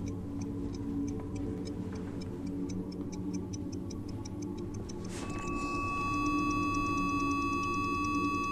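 Film score: a low, sustained drone with quick, even, clock-like ticking over it. About five seconds in, a sweeping whoosh leads into a held high electronic tone.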